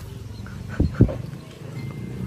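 Two dull thumps about a second in, a fraction of a second apart, over low street background noise.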